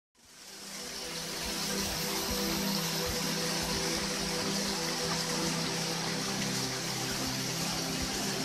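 Background music of slow, held notes over the steady rush of a small waterfall. The sound fades in over the first second or two.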